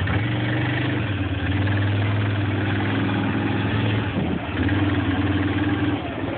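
Quad (ATV) engine running as it moves off, with a steady note that dips and picks up again a little after four seconds in.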